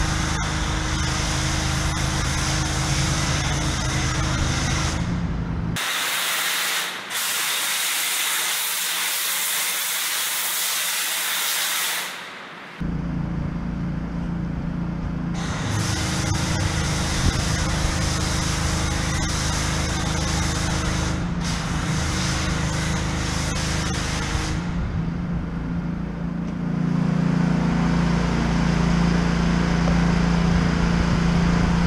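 Pressure washer running steadily with a foam cannon spraying, a hiss over the machine's hum. For about six seconds in the middle only a loud spray hiss is heard, and near the end the machine's hum grows louder.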